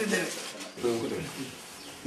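A man speaking in short phrases, with a pause between them.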